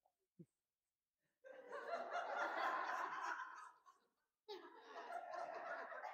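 Congregation laughing in two waves, the first starting about a second and a half in and lasting some two seconds, the second rising near the end.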